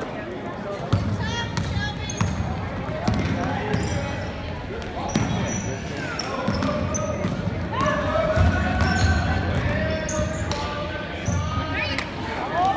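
A basketball dribbled on a hardwood gym floor, with the thumps echoing in the hall. Shouting from spectators and coaches runs over the play.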